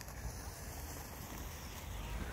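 Faint, even outdoor hush with a low wind rumble on the microphone; no distinct events.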